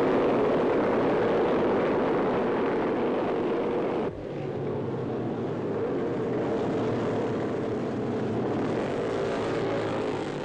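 A massed field of 500cc-class racing motorcycles roaring away at full throttle, a dense, continuous engine drone. About four seconds in, the sound drops suddenly and carries on a little quieter and steadier.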